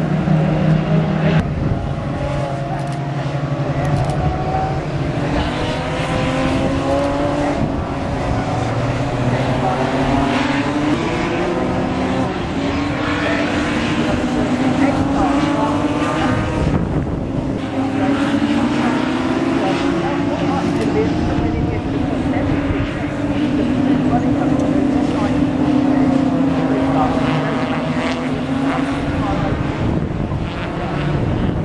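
Several BMW E36 3 Series race cars' engines revving hard, their notes overlapping and rising and falling as the cars accelerate, lift and change gear through a corner.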